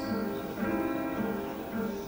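Live instrumental music led by plucked guitar, with a new note or chord struck about every half second over a low bass line.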